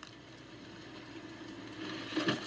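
A faint, steady low hum like an idling engine, with a few light ticks over it.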